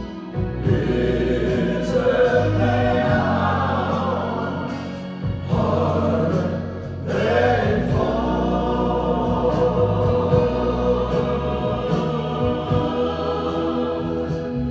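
Live country music: several men's voices holding sustained harmonies over acoustic guitars, electric guitar and electric bass.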